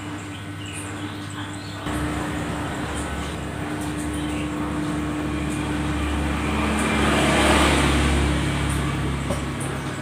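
A low rumble that starts suddenly about two seconds in, swells to its loudest about seven seconds in with a rising hiss, then eases off.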